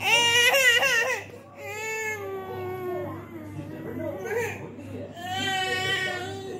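A toddler crying in loud, wavering wails: a burst at the start, a falling wail about two seconds in, and another near the end.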